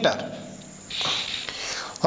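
Pen scratching across paper as a word is written: a soft, rasping hiss lasting about a second, starting about a second in.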